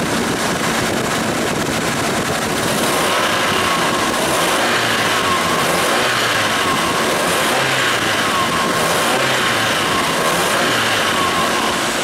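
Volkswagen Gol G2's 1.0 16-valve engine idling steadily at operating temperature, its ignition timing freshly corrected, heard close up in the engine bay under a loud, even rushing noise.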